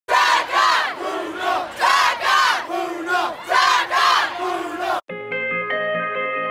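A group of people shouting together in loud, repeated bursts, like a chant or battle cry. It cuts off abruptly about five seconds in, and calm music with held notes starts.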